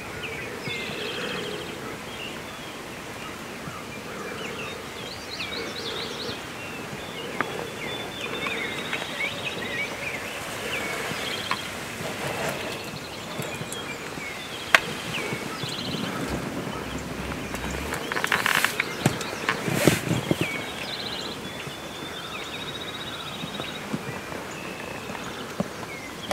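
A chorus of songbirds chirping and trilling over a faint steady outdoor background, with a louder burst of sound about two-thirds of the way through.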